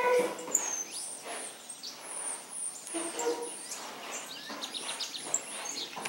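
Small songbirds, saffron finches among them, chirping and whistling with short, high, repeated notes.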